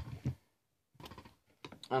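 A few faint, light clicks and taps of handling, scattered through the second half.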